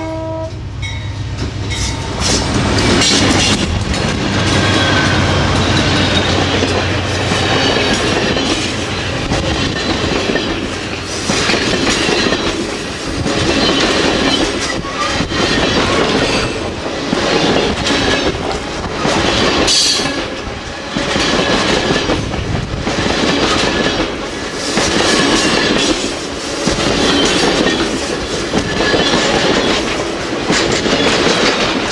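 An Amtrak Coast Starlight passenger train passes close by. The diesel locomotive's engine drones for the first several seconds, then the double-deck Superliner cars' wheels clatter over the rails, the noise swelling and easing about every two seconds, with a faint metallic ringing from the wheels.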